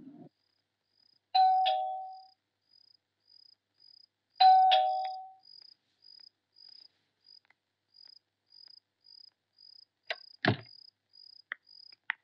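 Electric chime doorbell rung twice, each press giving a two-note ding-dong that fades away, over steady rhythmic cricket chirping. A short clatter comes near the end.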